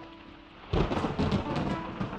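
Faint last notes of music fading out, then about three-quarters of a second in a loud thunder-and-rain sound effect starts suddenly and continues.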